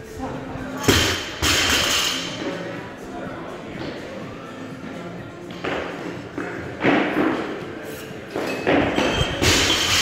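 A loaded barbell with bumper plates dropped onto a rubber gym floor, giving a heavy thud about a second in with the plates ringing after it. Several more barbell thuds follow later.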